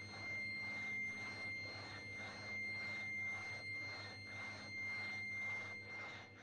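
A steady high-pitched electronic tone held over a low hum, with a hiss that swells and fades about three times a second.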